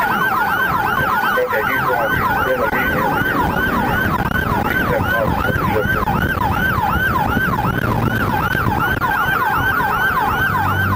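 Police siren in a fast yelp, its pitch sweeping up and down about four times a second without a break. Road and engine noise sit underneath.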